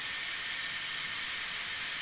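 Dyson Airwrap running on its cool shot, blowing unheated air through the curling barrel with hair wrapped around it to set the curl. It is a steady, high airflow hiss that does not change.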